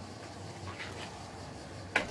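Faint, steady background hiss with a few soft, short ticks.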